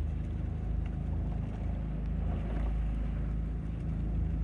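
Outboard motor of a small boat running steadily, a constant low drone.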